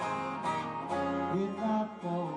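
Twelve-string acoustic-electric guitar strummed in an instrumental gap between sung lines of a folk-pop song, notes ringing and changing throughout.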